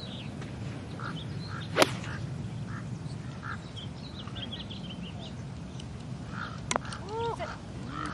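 An iron strikes a golf ball with one sharp crack about two seconds in. Birds chirp and call against a steady outdoor hum, and a second, fainter click comes near the end.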